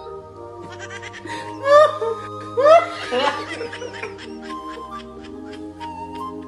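Background music with steady held notes, over which a man laughs in short bursts about two and three seconds in, then more faintly.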